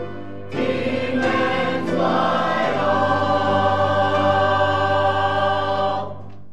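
Mixed church choir singing. It comes in strongly about half a second in and builds to a long held chord that cuts off near the end.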